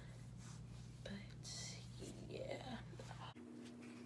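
Faint whispered or murmured speech over a low steady hum, with the hum changing abruptly a little after three seconds in.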